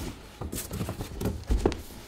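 Cardboard boxes scraping and knocking against each other as a boxed item is pulled out of a large shipping carton: a run of short knocks and rustles, with a dull thump about one and a half seconds in.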